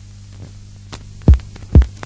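A steady low hum in the gap between songs. About a second and a half in, a deep electronic kick drum starts, beating about twice a second, as an electronic track begins.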